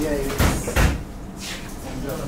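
Two sharp thumps about half a second apart, each with a short ringing tail, just after a brief vocal sound.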